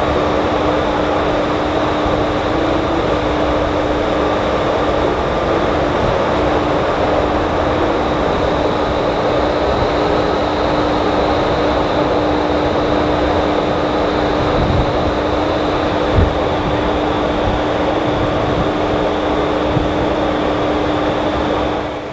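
Ripcord by iFly vertical wind tunnel running: a loud, steady rush of air with a constant low fan hum and a thin high whine. It cuts off suddenly at the end.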